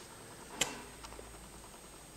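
One sharp click about half a second in, then a few faint ticks, over quiet room tone, as a paper chart and the drawing tools lying on it are handled.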